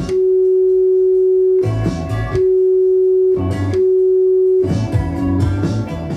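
Built-in tone generator of a Realistic DNR-1 Dolby noise-reduction unit sounding a steady, pure, mid-low beep three times: the first about a second and a half long, the next two about a second each. The tone is a test signal that the narrator takes to be meant for calibrating the unit. Guitar music plays in the gaps between beeps.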